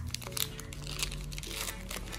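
Foil wrapper of a Pokémon trading card booster pack crinkling in the hands as it is pulled open, a run of short crackles, over soft background music.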